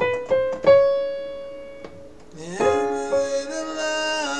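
Piano notes struck and left to ring out in an acoustic live rock performance. About two and a half seconds in, a male tenor voice comes in on a held sung note that starts to waver near the end.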